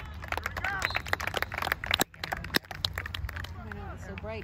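Spectators' voices in the stands with a quick run of sharp clicks and knocks close to the microphone through the first two and a half seconds, cut by a brief drop-out about two seconds in.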